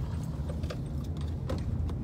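Steady low rumble of a car's cabin while driving, with a few faint, short clicks.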